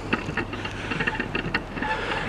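Diesel engine of a Class 43 HST power car idling: a steady low hum with scattered light ticks.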